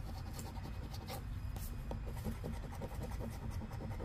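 A metal coin scratching the coating off a scratch-off lottery ticket in quick, irregular strokes.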